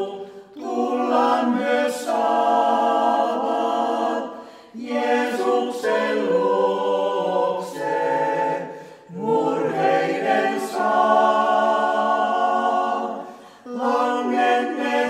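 Small mixed vocal ensemble of women and men singing a Finnish hymn a cappella in several parts. The singing comes in phrases of about four seconds, with brief breaks between them.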